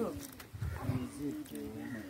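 Men's voices talking quietly, with low handling rumble on the microphone.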